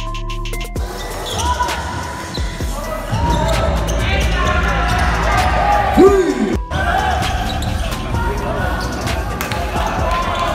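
Basketball game audio: a ball bouncing on the court and players' voices, coming in about a second in under background hip-hop beat music with a stepped bass line.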